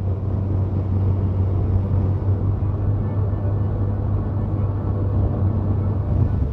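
A steady low rumble with a hiss of noise over it, holding at an even level.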